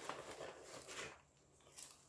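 Faint rustling and light clicks of hands rummaging through a shoulder bag full of small finds, dying away for a moment partway through.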